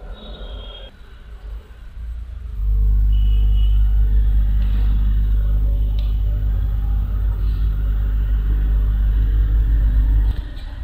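A deep, steady rumble starts suddenly about two and a half seconds in and holds at an even level.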